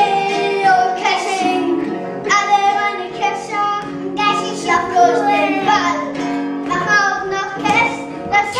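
Young children singing a song to the strumming of acoustic guitars, the sung phrases breaking off and restarting every second or so over ringing guitar notes.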